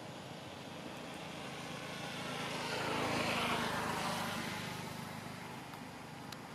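A motor vehicle driving past, growing louder to its loudest about three seconds in and then fading away.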